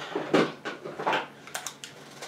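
Small objects being handled and set down on a vanity: a series of light clicks and knocks, several close together in the second half.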